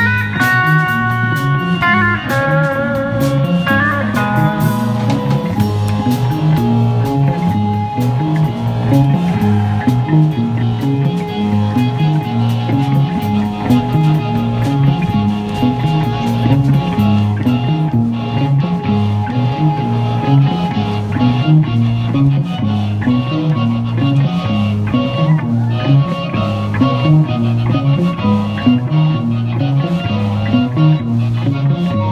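Live rock band playing: a hollow-body electric guitar through effects pedals, electric bass, drum kit and keyboard. In the first few seconds the guitar holds long notes that step in pitch, then it falls in over a steady, repeating bass line and drums.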